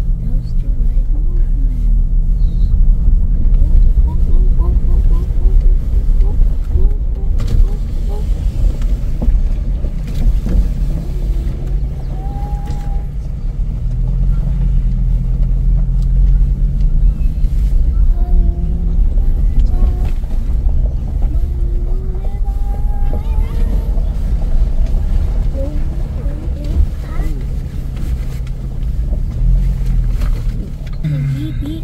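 Low, steady engine and tyre rumble heard inside an SUV's cabin as it drives slowly over a rocky gravel track, the engine note shifting a little in pitch with speed. Faint voices talk in the background.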